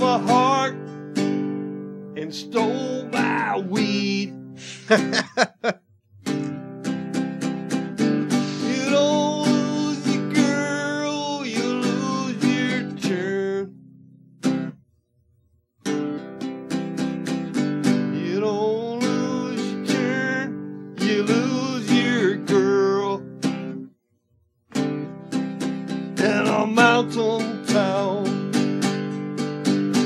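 A man singing live to his own strummed acoustic guitar, his voice rising and falling over the chords. The sound cuts to silence for about a second twice: once near the middle and once about three-quarters of the way through.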